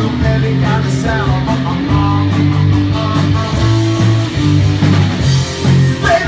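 Live rock band playing, with guitar and drum kit.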